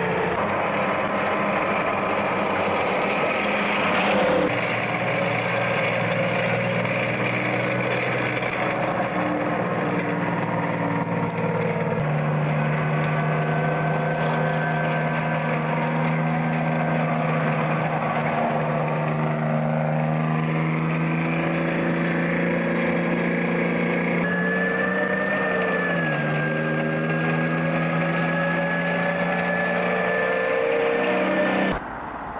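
Engines of tracked armoured vehicles running as they drive along a road: a steady low drone with a thin high whine above it, its pitch changing abruptly several times. Near the end the engine note dips and then recovers.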